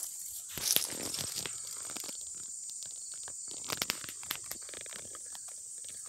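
A steady high-pitched drone of insects in late summer, with crunching footsteps in grass about a second in and again near four seconds.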